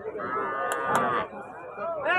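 A single long moo from one of the cattle, about a second long, held at a steady pitch and trailing off.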